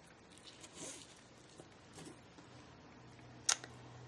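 Faint rustling of hands handling a small glued paper craft piece, then a single sharp click shortly before the end.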